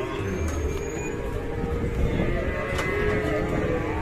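Cattle mooing in long, drawn-out calls over the steady hubbub of a livestock market.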